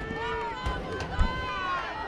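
Several overlapping voices calling and shouting across a youth football field, fairly high-pitched, with a short low thump just past a second in.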